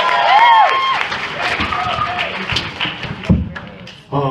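Audience clapping and cheering with a few whoops, loudest in the first second and then dying away. A single thump comes near the end.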